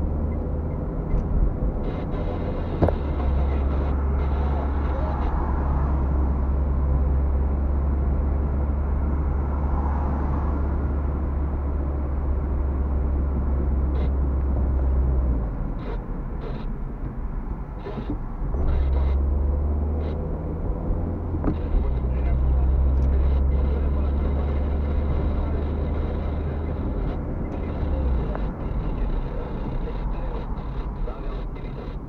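Steady low rumble of a car's engine and tyres on a wet road, heard inside the cabin. The rumble eases for a few seconds about halfway through, then returns.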